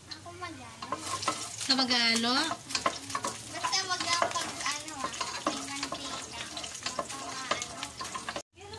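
Aromatics sizzling in hot oil in a pot while a spatula stirs and scrapes them, with many small clicks. A loud, wavering, voice-like call rises over it about two seconds in, and shorter, fainter ones follow.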